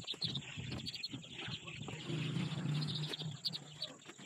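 Young chicks peeping, many short high calls overlapping. About two seconds in, a low steady hum lasts about a second.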